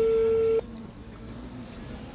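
Ringback tone of an outgoing call playing through a mobile phone's loudspeaker: one steady beep about a second long that cuts off about half a second in.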